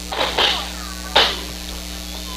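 Steady low electrical hum from the commentary audio feed, the sign of a bad cord or plug connection, which the commentators take for a short. Two brief noisy sounds are heard over it, one just after the start and one about a second later.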